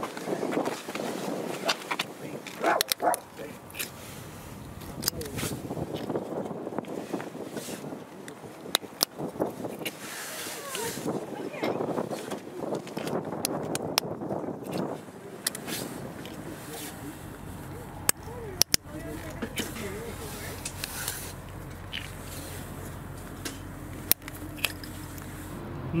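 Plastic lug bolt covers being pulled off an alloy wheel with a removal tool, and the wheel tools being handled: scattered sharp clicks and knocks over steady handling noise.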